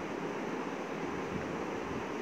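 Steady, even background hiss (room tone and recording noise), with no distinct event.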